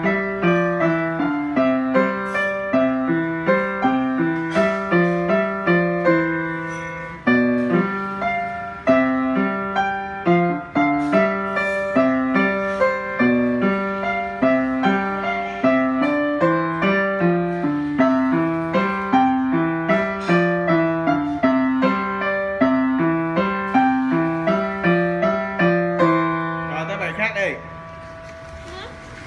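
Upright piano played from sheet music: a continuous run of notes over a repeating left-hand pattern, which stops about a second before the end, where a voice comes in.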